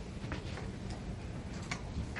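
Library reading-room ambience: a low steady hum of the room with a few light, scattered clicks and taps from students working at their desks.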